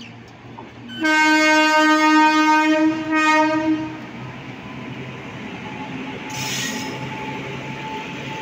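An Indian Railways electric locomotive sounds one long horn blast of about three seconds, starting about a second in. After it comes the steady rumble of the train's coaches rolling past as it departs, with a short hiss near the end.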